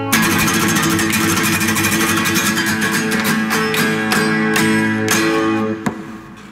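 Steel-string acoustic guitar strummed fast and hard in a dense run of chords, closing the song. Near the end the strumming stops with a sharp click and the last chord rings and fades.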